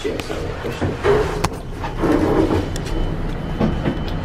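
Steady low hum inside a moving elevator cab, with a couple of sharp clicks and faint muffled voices.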